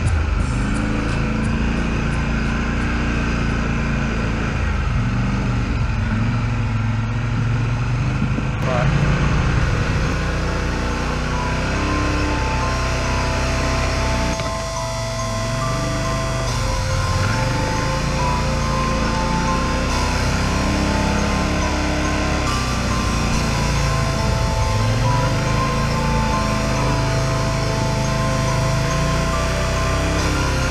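Background music with vocals and a repeating synth melody, laid over an ATV engine running and revving on a muddy trail.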